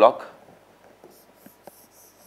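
Stylus writing on an interactive touchscreen board: faint, high scratching strokes on the screen start about a second in, with a few light taps of the pen tip.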